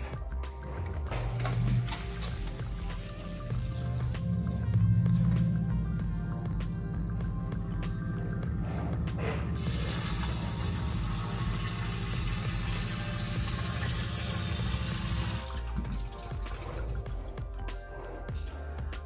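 Submersible sump pump running after being plugged in, pushing water up the discharge pipe with a steady low hum. About halfway through, a loud rushing, flushing hiss of water joins it. The hum and hiss stop together about three seconds before the end, as the pump shuts off with the pit pumped down.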